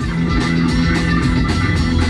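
A song from an FM oldies radio station playing through the car's audio system speakers, heard inside the cabin.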